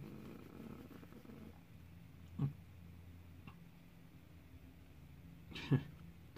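A man's soft, breathy chuckle trailing off in the first second or so, then quiet room tone with a couple of faint clicks.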